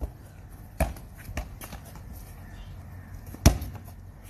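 A basketball hitting hard surfaces in sharp, separate thuds: one about a second in, a fainter one just after, and the loudest near the end.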